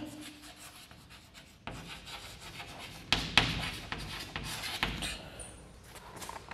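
Chalk scraping on a chalkboard as words are written: a run of short scratchy strokes starting about two seconds in, a few of them louder.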